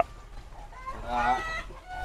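A chicken clucking in the background, faintly, in a couple of short calls.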